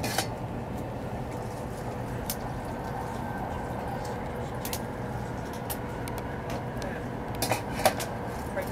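Interior running noise of a Taiwan High Speed Rail 700T electric train in motion: a steady rumble and hum with faint steady tones, broken by a few sharp clicks, two of them close together near the end.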